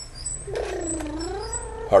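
A drawn-out voiced hum, dipping in pitch and rising again, lasting about a second and a half.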